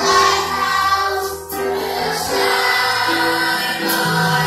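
A children's choir singing together in held notes, with a brief break between phrases about a second and a half in.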